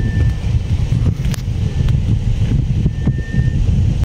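Wind buffeting the microphone: a steady, fluttering low rumble, with a few faint clicks and a thin high whistle near the start and again about three seconds in.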